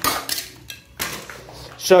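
Loose plaster breaking away from a wall and clattering onto plaster shards on the floor: several sharp clinks in the first second. The plaster comes off because it has not stuck to the sand-and-cement undercoat, which was never sealed with PVA.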